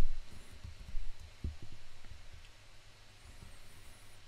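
Quiet room tone with a few faint, short low thumps in the first second and a half.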